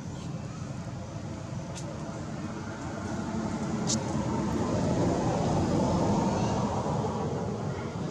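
A road vehicle passing: a low rumble that swells to its loudest about five to six seconds in and then eases off, with two faint clicks earlier on.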